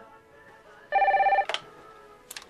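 Electronic desk telephone ringing: one short trilling ring about a second in, followed right away by a sharp click.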